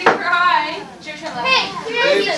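Several people talking over one another, children's voices among them, with a sharp click at the very start.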